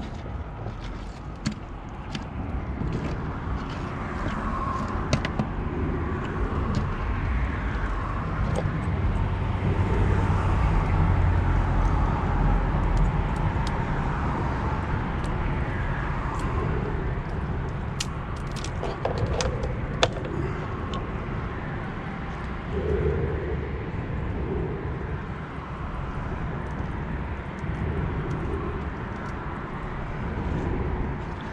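Shears cutting bait crab on a fiberglass boat deck: scattered sharp clicks and crunches, over a steady low rumble.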